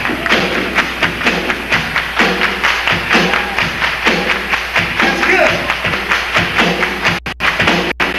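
Live rock band playing with a dense, fast percussive rhythm and a pitched line that rises and falls, recorded from within the venue. The sound briefly drops out twice about seven seconds in.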